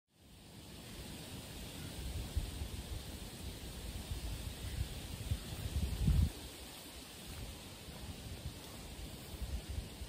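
Outdoor ambience with wind rumbling on the microphone and footsteps on dry leaf litter as a person walks up to the microphone and kneels; the footfalls are loudest about six seconds in.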